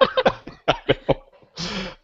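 People laughing in short bursts that trail off over about a second, heard over a video-call link, then a short breathy burst near the end.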